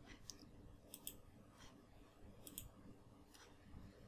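Near silence: room tone with a few faint, short clicks, twice in quick pairs.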